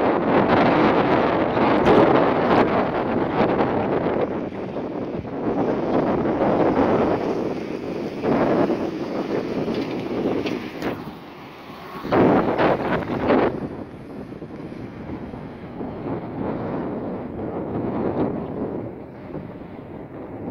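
Wind blowing across the microphone in gusts, rising and falling in strength, with a strong gust a little past halfway.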